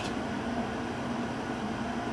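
Steady background noise: an even hiss with a low hum and no distinct knocks or clicks.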